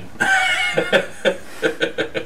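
A man chuckling: a short voiced laugh, then a string of brief breathy bursts about four a second.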